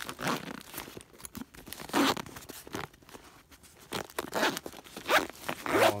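Zipper of a fabric first-aid kit pouch being pulled in several short strokes as the kit is zipped shut.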